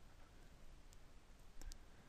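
Near silence with faint computer mouse clicks: one about halfway, then two close together near the end.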